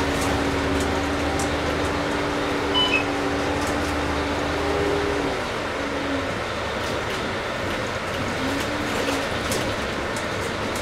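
Volvo Olympian double-decker bus heard from inside while under way: a steady diesel engine drone over road noise, with light rattles. About five seconds in, the engine note drops away, and a short rising engine note follows near nine seconds.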